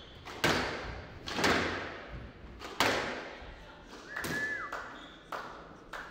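Squash ball struck by rackets and hitting the court walls in a rally, about six sharp thwacks roughly a second apart, each echoing in the court. About four seconds in, a short falling squeal of a shoe on the wooden floor.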